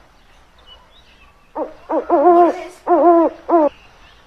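An owl hooting: a run of about five pitched calls, short and long, starting about one and a half seconds in.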